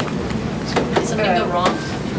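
Indistinct voices of people in a room, with a few light clicks and knocks.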